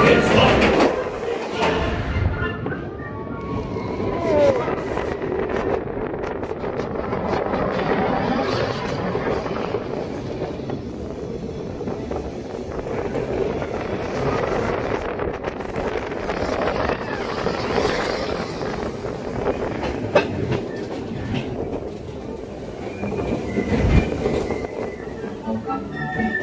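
Seven Dwarfs Mine Train coaster cars running along the track at speed: a continuous rumble and clatter of the wheels.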